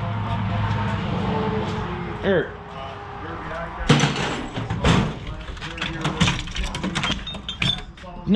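Steel tool-chest drawers sliding and knocking, with hand tools clattering inside them: a run of sharp knocks and clicks from about halfway through.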